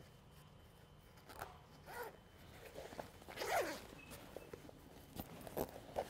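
Cushion-cover zipper being pulled open and the vinyl cover being handled as it is turned right side out: a faint series of short zipping and rubbing sounds, the loudest about three and a half seconds in, with a few small clicks near the end.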